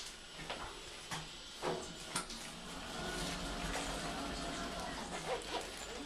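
Otis Gen2 lift car's single two-speed sliding door operating at the landing: a few short clicks and knocks, then a steady rushing run of about three seconds as the door panels travel.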